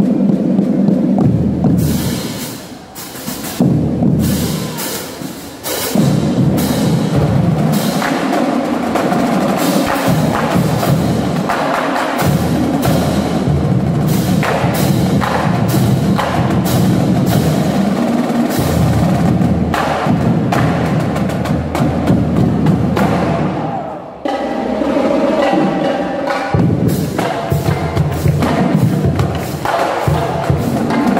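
Marching drumline of snare drums and bass drums playing: fast sharp stick strikes over deep bass-drum hits. The playing eases off briefly twice, a few seconds in and about six seconds before the end.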